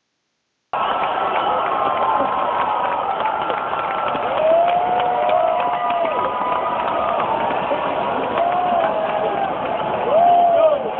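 Arena crowd cheering and shouting for a wrestler's ring entrance, heard in a muffled, dull-sounding recording from the stands. It cuts in suddenly under a second in, and single voices rise and fall above the steady crowd noise.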